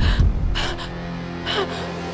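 Sharp gasps of breath, one at the start and more about halfway and near the end, over a tense score of steady, held low notes.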